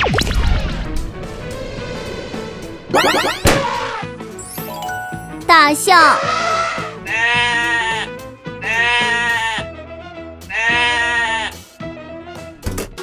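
Cartoon soundtrack: background music with a sudden zap effect at the start and quick sweeping sound effects in the first half, then three long, wavering bleat-like animal calls in the second half.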